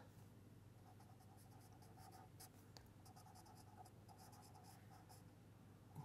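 Pen writing on paper: faint, irregular scratching strokes of handwriting.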